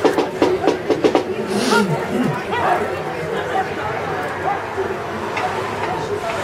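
Spectators' voices and chatter in the grandstand, with a quick run of sharp clicks in the first second.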